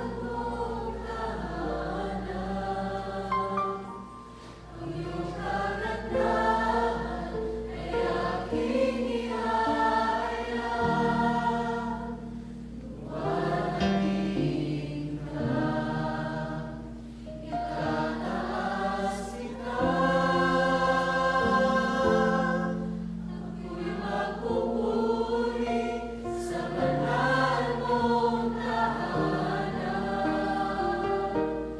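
Worship song sung in Tagalog by a group of voices singing together over instrumental accompaniment, with sustained chords and low notes.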